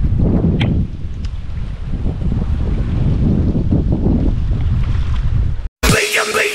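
Wind buffeting the microphone over open water: a heavy, uneven low rumble. It cuts off abruptly near the end, and electronic outro music starts.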